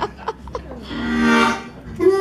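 Harmonica through a vocal microphone: one breathy held chord that swells up about a second in and fades away near the end.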